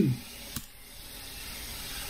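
Steady hiss from the microphone's noise floor, with a single short click about half a second in.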